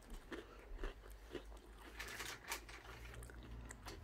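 Faint crunching of a person chewing a Reese's peanut butter-dipped pretzel: a scatter of small, irregular crunches.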